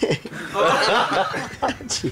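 Several people chuckling and laughing together, their voices overlapping, with bits of chatter.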